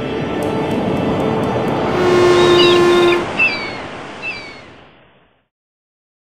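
Intro sound for a production logo: a swelling rushing noise with held tones, topped by short chirping glides about two to four seconds in, then fading out a little after five seconds in.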